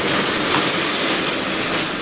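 Heavy red metal cage on wheels being pushed over concrete, rolling and rattling steadily.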